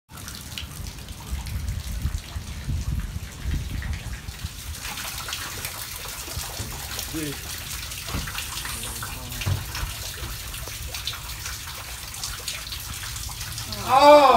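Steady rain falling, an even hiss, with a low rumble over the first few seconds.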